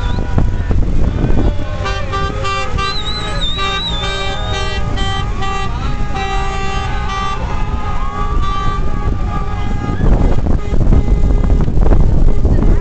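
Several car horns honking together in repeated short blasts over the low rumble of traffic, celebratory honking from a convoy of cars, with a wavering high tone about three seconds in. The honking stops after about nine seconds and the rumble grows louder.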